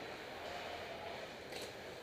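Indoor ice hockey rink ambience: a steady hiss with distant skating. A brief, sharp, high scrape comes about one and a half seconds in.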